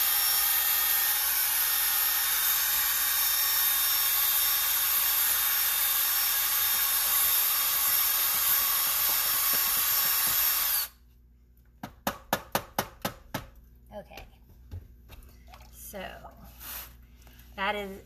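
Cordless drill running steadily at high speed, spinning a mixing paddle through a bucket of ceramic glaze to homogenize it. It cuts off suddenly about eleven seconds in, followed about a second later by a quick run of sharp knocks.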